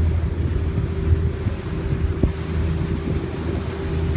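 Boat engine running at a steady speed as a low, even drone, with wind buffeting the microphone and water rushing past the hull.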